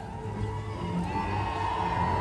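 Amplified show music over a large audience cheering, with a held note coming in about a second in.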